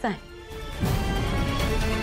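Dramatic background score with sustained held tones. About a second in it swells suddenly into a louder, deep music cue.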